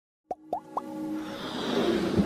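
Animated logo intro sound effects: three quick pops that each glide upward in pitch, about a quarter second apart, then a swelling whoosh that builds in loudness.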